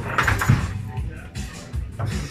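Table football in play: sharp clacks of the ball being struck by the figures and rods knocking against the table, over background music and voices.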